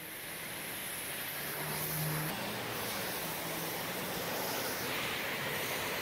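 Steady rushing noise of distant road traffic, fading in at the start, with a faint engine hum from a passing vehicle about two seconds in.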